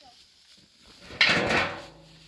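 A short scraping clatter of household containers being handled, starting a little over a second in and lasting about half a second.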